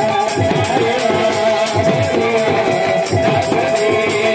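Kirtan music played on hand drums and cymbals: a fast, steady drum rhythm with low strokes that bend down in pitch, a regular cymbal beat, and a held melodic note over them.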